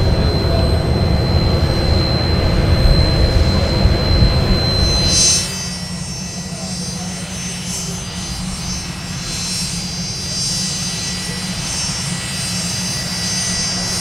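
A loud low rumble, then about five seconds in a sudden change to a steady high-pitched whine of several tones with a pulsing hiss. This is the SureFly octocopter's electric rotor motors being spun up on the ground, the aircraft not taking off.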